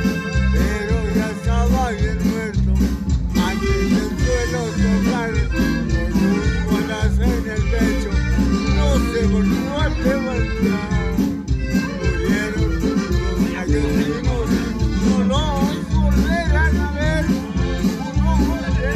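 Live norteño music from a hired group: a steady bass beat with accordion and singing over it.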